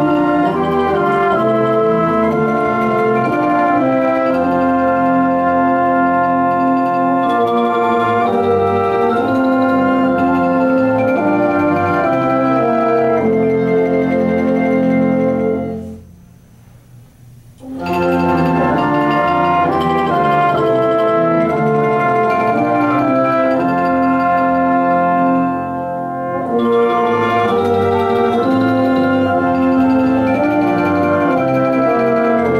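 A small live instrumental ensemble plays sustained chorale-like chords under a student conductor. About halfway through, the players cut off together and come back in together a second and a half later.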